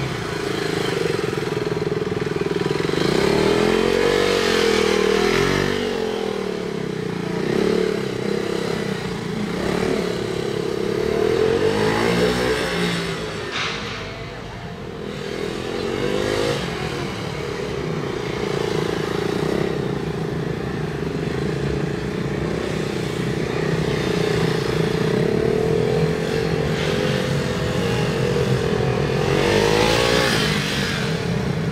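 KTM Duke 390's single-cylinder engine revving up and falling back again and again as the bike is throttled on and off through tight turns, the pitch rising and dropping with each turn. It drops off to its quietest about halfway through before picking up again.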